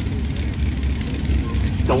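Farm tractor engines idling: a steady low rumble.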